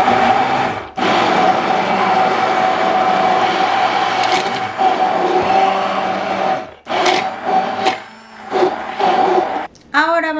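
Stainless immersion (stick) blender running in a tall plastic beaker, blending a liquid mix of mango purée, milk and cream with a steady motor whine. It cuts briefly about a second in, stops shortly before seven seconds, then gives a few short pulses near the end.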